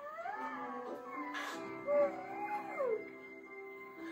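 A woman's high-pitched, gliding whine, muffled against a pillow, with a brief louder outburst about halfway through, over soft sustained background music. It is a flustered, overwhelmed reaction.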